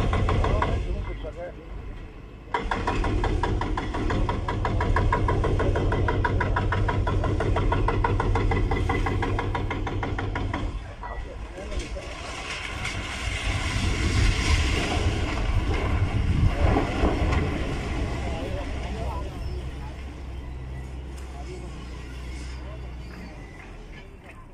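Excavator's diesel engine running under load as it works at the base of a multi-storey concrete building. About twelve seconds in a broad rush of noise takes over as the building collapses, loudest for a few seconds and then fading.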